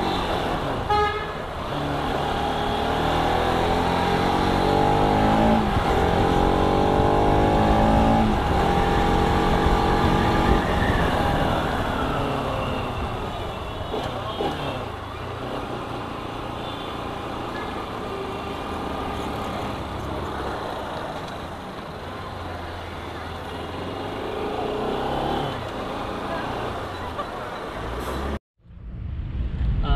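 Bajaj Pulsar RS200's single-cylinder engine pulling through city traffic, its pitch rising twice in the first half as it accelerates, then running more steadily. Car horns toot in the surrounding traffic.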